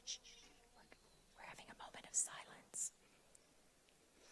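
A person whispering a few words for about a second and a half, with sharp hissing 's' sounds, in an otherwise hushed room.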